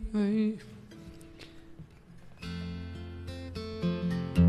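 Steel-string acoustic guitar, a 1973 Guild D-35 dreadnought, picked about two and a half seconds in: a chord rings on with a few notes shifting over it. A man's voice finishes a held, pitched phrase in the first half-second.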